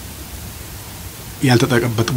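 Steady background hiss in a pause between sentences, then a man's voice starts speaking again in Amharic about one and a half seconds in.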